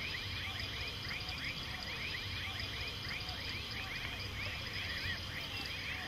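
Outdoor animal chorus: many short, falling chirps repeating rapidly and overlapping, over a steady high insect drone and a low rumble.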